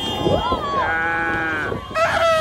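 A person's drawn-out shout, rising at first, then held for about a second before its pitch drops away.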